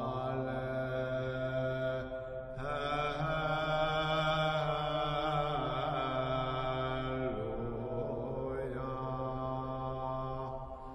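Slow background music in a chanting style: long held vocal-like notes over a steady low drone, moving to a new note every two or three seconds.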